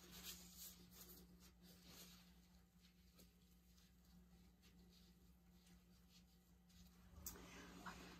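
Near silence: room tone with a faint steady hum and a few faint ticks.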